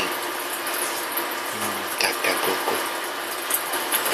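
A person's short, muffled hum through a pacifier about a second and a half in, over a steady background hiss.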